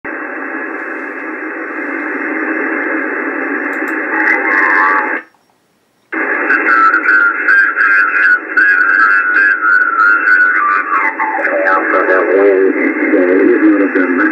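Shortwave receiver audio from the 21 MHz amateur band through a narrow single-sideband filter: band hiss, a dropout of about a second, then garbled, whistling single-sideband signals as the receiver is tuned onto a station. Near the end a ham operator's voice comes through.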